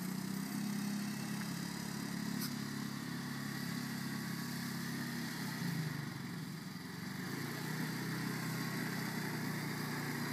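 A motor or engine running with a steady low hum, its pitch wavering briefly about six seconds in.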